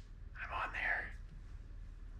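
A man's short breathy, whispered sound about half a second in, over quiet room tone with a low steady hum.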